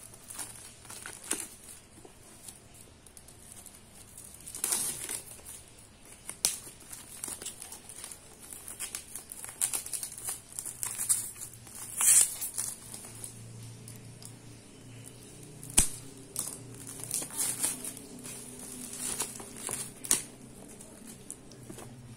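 Clear plastic shrink-wrap being torn open and peeled off a paperback book: irregular crinkling and crackling, with a few sharper, louder rips.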